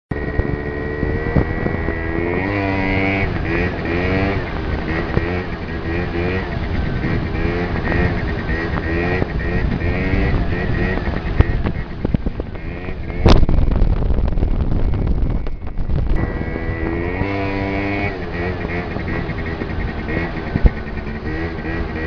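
Yamaha BWS scooter engine being revved up and down over and over while ridden, with wind noise on a helmet-mounted microphone. About thirteen seconds in there is a sharp knock, followed by a few seconds of louder rumbling and buffeting before the revving picks up again.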